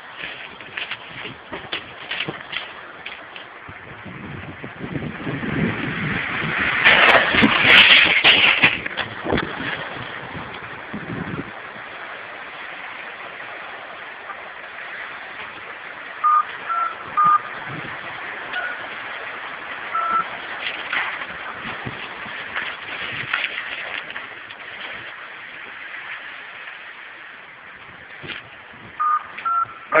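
A trackside bank of earth and snow giving way in a landslide: a rushing rumble that builds, is loudest about seven to nine seconds in, and dies away about eleven seconds in. Several short electronic beeps come later.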